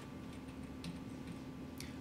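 Quiet room tone with a low steady hum and a few faint ticks, the sharpest near the end.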